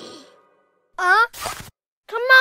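A cartoon character's short wordless vocal sound about a second in, followed at once by a breathy sigh.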